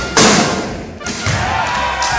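A loud heavy thump about a fifth of a second in, from a man's jumping dunk attempt at a basketball hoop, ringing out over about a second. A voice follows.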